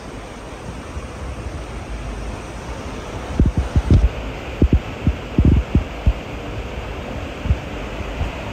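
Wind noise on the microphone: a steady rush, with low buffeting thumps from about three seconds in.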